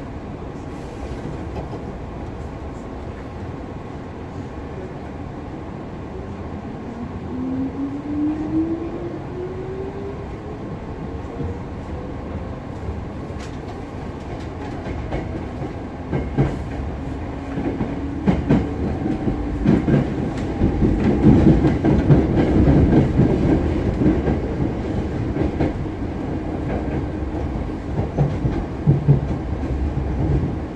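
Hankyu 7000 series electric train with IGBT field-chopper control, heard from inside the car. A whine climbs steadily in pitch as the train picks up speed. Over the rumble of the running gear, wheels click over rail joints, more often and louder in the second half.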